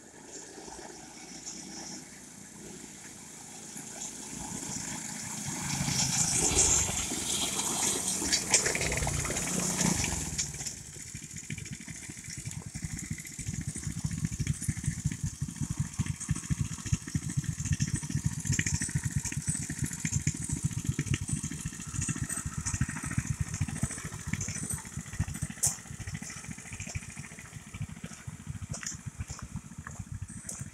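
A small-engine off-road vehicle comes up the gravel lane, growing louder and loudest as it passes close about six to ten seconds in. After that a small engine runs on steadily with a rapid low pulsing.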